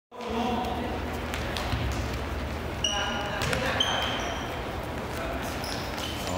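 Indoor futsal game in a gym hall: the ball being kicked and bouncing on the hard floor with several sharp knocks, and sneakers squeaking on the floor twice, about three and four seconds in, all with the hall's echo.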